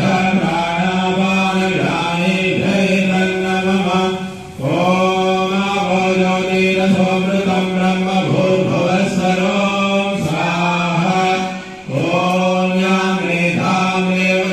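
A man chanting Sanskrit fire-offering (homa) mantras into a microphone, held on one steady reciting pitch. He breaks for breath twice, about four and a half and twelve seconds in.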